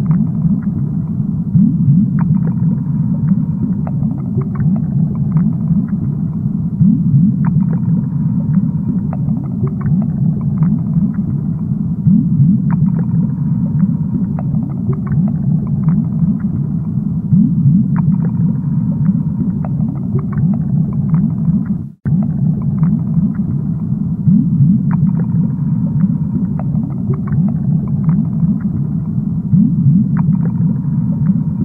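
Low, steady underwater rumble of an aquarium, full of small bubbling blips and faint ticks. It cuts out for an instant about 22 seconds in.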